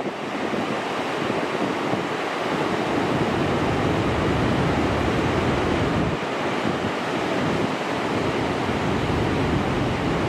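Large ocean waves breaking and whitewater washing in, a steady unbroken noise of heavy surf. Wind on the microphone adds uneven low rumbles.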